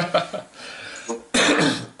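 A man laughing: short voiced bursts, then a louder, breathy burst of laughter in the second half.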